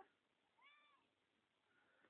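A cat meowing once, a short faint meow that rises and falls in pitch, about half a second in.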